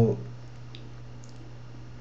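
Steady low hum of background recording noise with a single faint click a little under a second in.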